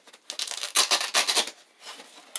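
Rustling and scraping as elastic bands are pulled off a 187 Killer Pads protective pad and its packaging. The burst of handling noise starts about a third of a second in and lasts a little over a second.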